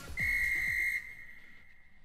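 A referee's whistle blown once: a single steady high blast of just under a second that stops sharply and rings out briefly. The end of the theme music fades underneath at the start.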